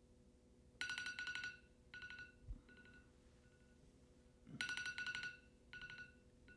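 Electronic phone ringtone: a bright, rapidly trilling burst followed by fainter repeats, sounding twice about four seconds apart. A single soft low thump comes between the two rings.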